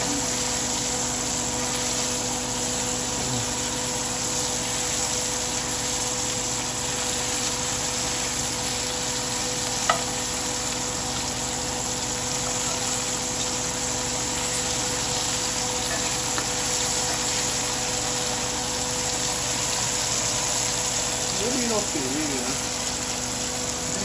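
Smelts sizzling steadily in hot oil in a cast iron skillet, over a steady low hum. One sharp tap comes about ten seconds in.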